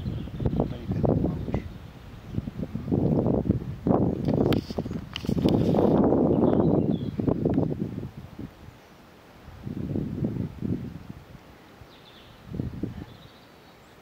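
Wind buffeting the microphone in uneven gusts of low rumbling noise. The gusts are strongest from about four to seven seconds in, then die down to a couple of weaker gusts.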